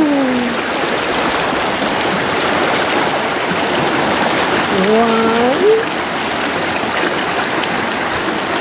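River water rushing steadily over rocks, a continuous hiss.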